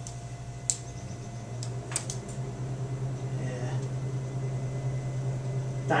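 Steady low hum of a small meeting room, with a few short clicks and paper handling in the first couple of seconds.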